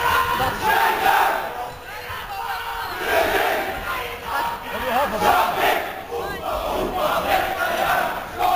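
A group of voices shouting and chanting together, loud and overlapping, in a reverberant hall, swelling and dropping in surges.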